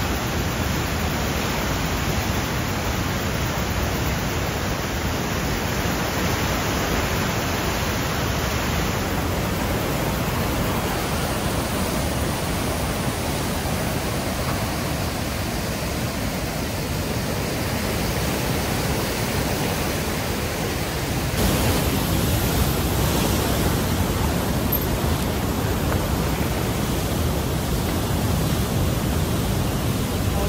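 Whitewater of a large, fast river surging through a narrow rock gorge: a loud, steady rush of water. About two-thirds of the way in, it suddenly becomes a little louder and brighter.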